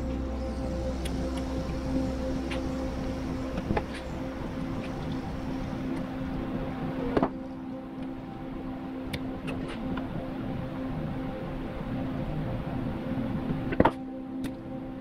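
A steady droning hum with a few sharp clicks of plastic and metal parts as a fuel pump and its hanger assembly are handled on a workbench.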